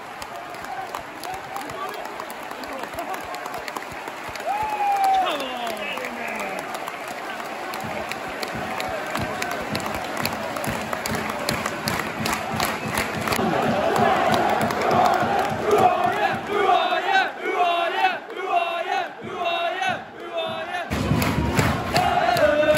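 Football stadium crowd: a steady din of many voices that grows louder and turns into massed singing about halfway through, with hand clapping. A single long shout falling in pitch stands out about five seconds in.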